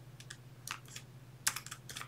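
Computer keyboard keystrokes while editing code: a few scattered key taps, then a quick run of taps about one and a half seconds in.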